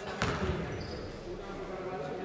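A basketball bounces once, sharply, on the hard court floor just after the start, the thud ringing out in the large sports hall.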